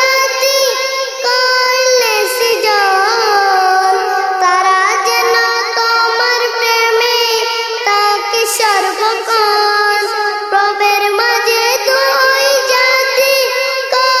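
A young boy singing a Bengali Islamic naat (gazal) solo: one continuous high-pitched melodic line with long held notes that bend and waver.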